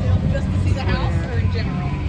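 Indistinct voices of nearby people talking, over a steady low rumble.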